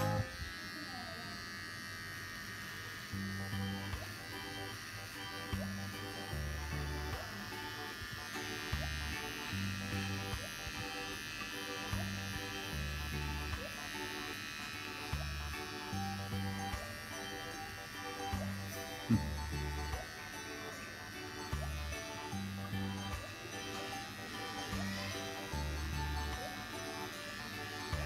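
Cordless electric beard trimmer buzzing steadily as it is run over neck and jaw stubble, cutting the hair. Background music with a repeating bass line plays underneath.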